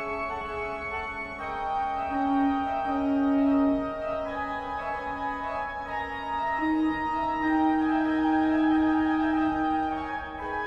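Organ playing slow, sustained chords that change every second or two, with a low note held beneath and the upper voices shifting.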